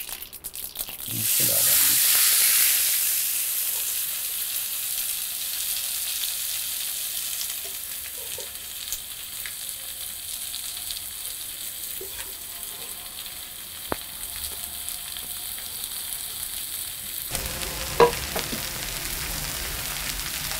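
Shredded cassava leaves dropped into hot oil in a frying pan, sizzling loudly about a second in, then settling into a steadier, quieter fry as they are stirred. A few sharp clicks of a wooden spatula against the pan come later.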